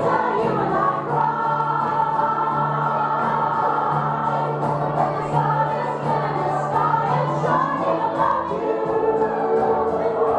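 Music with singing, played loudly, with a sustained bass line and a light steady beat.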